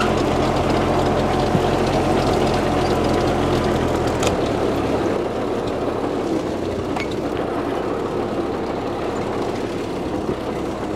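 Ford 8N tractor's four-cylinder flathead engine running steadily while it tows a heavily loaded firewood trailer. The engine sound changes abruptly and grows a little quieter about four seconds in.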